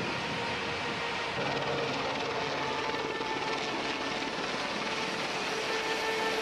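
A steady engine drone under a rushing noise.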